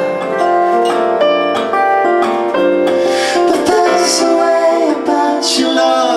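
Live pop song: keyboard and a strummed acoustic guitar, with a male and a female voice singing.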